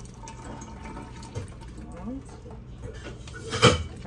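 Water draining out of a plastic orchid pot full of soaked bark, trickling and dripping into a stainless-steel sink as the pot is tilted to let it drain. A single sharp knock about three and a half seconds in is the loudest sound.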